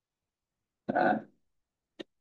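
A man's single brief one-syllable vocal sound about a second in, with dead silence around it. A faint click comes at the very end.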